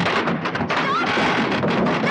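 Loud, dense demolition clatter of timber being torn out of a house frame: rapid banging and knocking of hammers and boards, with a brief squeak about a second in.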